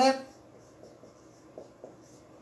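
Marker writing on a whiteboard: faint scratching strokes, with a couple of short, slightly louder strokes near the end.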